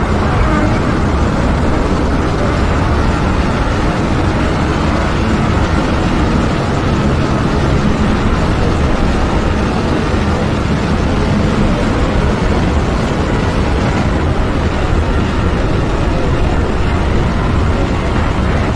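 A dense, steady wall of droning noise with a deep rumble underneath and faint held low tones, from a dark ambient soundscape track.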